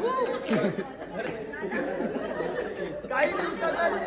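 Several people talking and calling out over one another in excited group chatter, with one voice louder about three seconds in.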